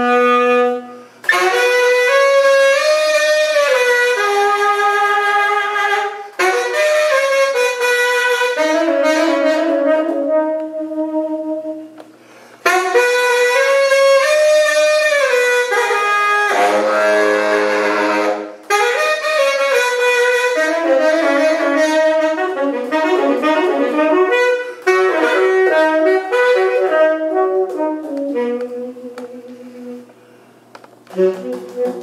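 Solo tenor saxophone playing free jazz in long phrases broken by short pauses for breath. About two-thirds of the way through, a rough, gritty low passage gives way to quick runs of notes near the end.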